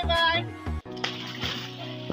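Background music with a melody over a pulsing bass, then after a sudden cut about a second in, water splashing from a swimmer thrashing, with the music still underneath.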